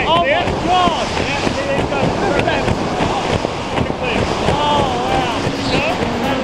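Wind rushing over the camera microphone during a tandem parachute descent, with excited shouts from the skydivers rising and falling in pitch over it.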